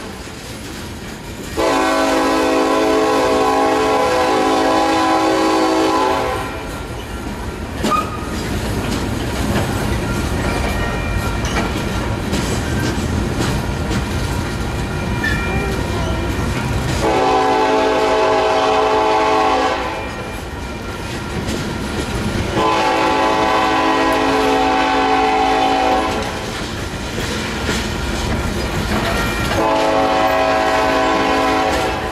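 Coal hopper cars rolling past, with a steady rumble of wheels on the rails, while a locomotive air horn sounds separate blasts over it: a long one about two seconds in, a shorter one past the middle, another soon after, and a new one starting at the very end.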